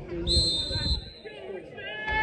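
A football referee's whistle blown once, a steady shrill blast lasting under a second. Near the end a man's voice calls out loudly.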